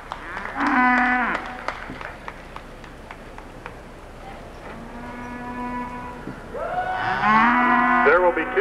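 Texas Longhorn heifers mooing: three moos, the first about half a second in and falling away at its end, a second longer, steady one around five seconds in, and a third, the loudest, rising at its start near the end.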